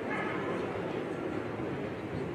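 Murmur of distant voices in a large hall, with a brief high-pitched cry or squeal near the start.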